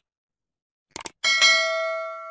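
Subscribe-button sound effect: a quick click about a second in, followed at once by a bell ding that rings on in several steady tones and fades slowly.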